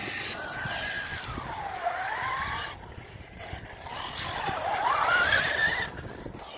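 Electric RC car's motor and drivetrain whining, its pitch dropping as the car slows and climbing as it speeds up again. The whine cuts out just before halfway, then comes back and rises steeply near the end as the car accelerates.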